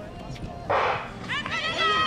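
Starting pistol fired for a sprint start, a single loud report about two-thirds of a second in, followed by spectators shouting encouragement.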